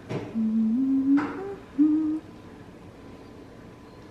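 A woman humming a few low notes that step upward in pitch, stopping a little after two seconds.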